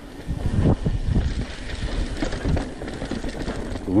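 Alloy Santa Cruz Bronson V3 mountain bike rolling fast down a dirt and gravel trail: tyres rumbling over stones with irregular rattles and knocks from the bike over the bumps, loudness rising and falling with the terrain.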